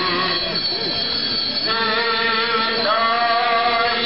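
Sung hymn or chant in long, steady held notes, the pitch stepping to a new note about every second.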